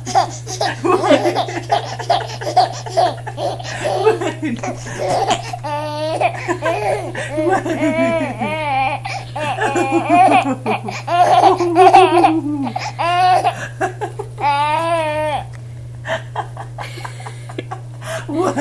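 A baby laughing hard in repeated bursts of giggles and belly laughs, loudest about halfway through, over a faint steady low hum.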